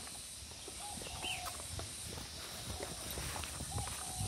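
Quiet woodland ambience: a steady high insect drone, faint bird calls including a short chirp about a second in, and soft footsteps on a paved path.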